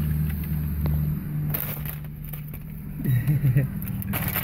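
A pickup truck's engine idling steadily, heard from inside the cab, with paper bag rustling as food is unpacked. A short murmur of voice comes about three seconds in.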